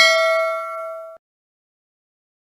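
Notification-bell 'ding' sound effect of a subscribe-button animation: a single bright bell chime with several ringing tones that fades and cuts off suddenly a little over a second in.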